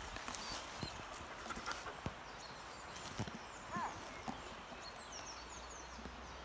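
A dog gives a few short, high yelps during disc play, the clearest about four seconds in, amid scattered light clicks and taps.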